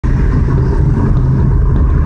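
A car's engine and tyres on the road making a steady low rumble, heard from inside the cabin while the car drives along.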